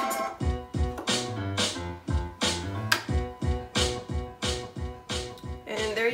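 A beat-driven track played back through a DJ mixer from a Serato DVS setup, the right turntable's custom-printed control vinyl driving playback; the beat is steady, about two and a half hits a second.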